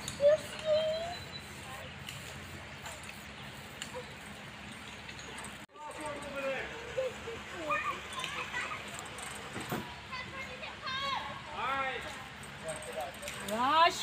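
Indistinct voices of children and adults talking, with a brief dropout in the sound a little over halfway through.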